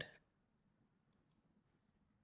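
Near silence with room tone, and two faint clicks of a computer mouse a little over a second in.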